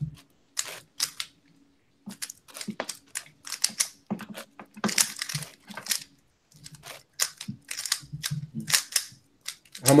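Moyu 15x15 puzzle cube being turned by hand: quick runs of plastic clacks and clicks from the layer turns, in bursts broken by short pauses.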